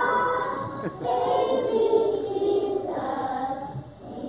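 A group of young children singing together, with a short break about a second in and the phrase dropping away near the end.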